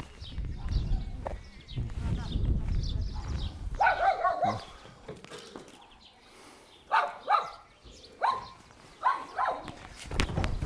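A dog barking: a quick run of short barks, two close together about seven seconds in and a few more just after.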